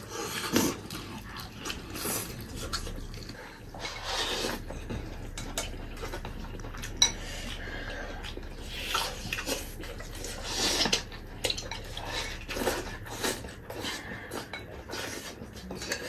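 Chopsticks clicking and scraping against porcelain bowls while rice and braised pig trotters are eaten, mixed with chewing and mouth noises. One sharper clink comes about seven seconds in.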